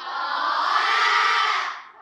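A class of schoolchildren answering together with one long, drawn-out shout of "Có!" ("Yes!") in unison, lasting nearly two seconds and fading out near the end.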